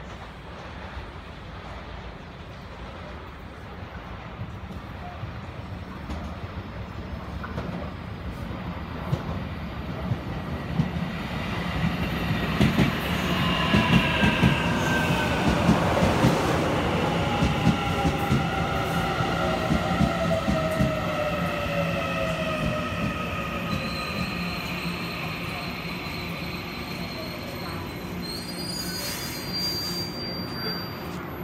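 Taiwan Railway EMU900 electric multiple unit arriving and braking to a stop: it grows louder as it runs in, with wheel knocks over the rail joints as it passes, a falling whine from the traction motors as it slows, and a thin high steady squeal from the wheels and brakes in the last few seconds.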